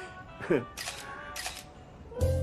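DSLR camera shutter firing, a few quick clicks in the first second and a half, over soft background music.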